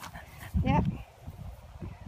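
A dog makes one short, rising vocal sound about half a second in.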